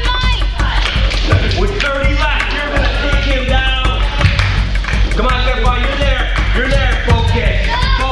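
Music with a steady beat and a voice singing over it.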